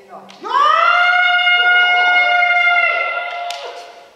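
A kendoka's kiai: one long shout that rises sharply at its start and is then held on a steady high pitch for about three seconds, with a brief sharp tap near the end.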